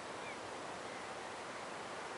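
Quiet, steady outdoor background hiss, with one faint, brief chirp about a quarter of a second in.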